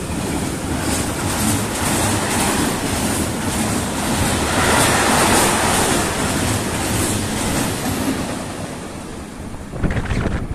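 Freight train of covered hopper wagons passing close by at speed: steady clatter and rumble of the wagons' wheels on the rails. It is loudest about halfway through and fades about nine seconds in as the last wagon goes by.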